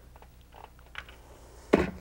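Household iron sliding over cotton fabric on a pressing board, a few faint soft taps, then a sudden thump near the end as the iron is lifted off and set down.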